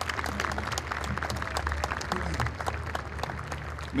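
Crowd applauding, many people clapping at once.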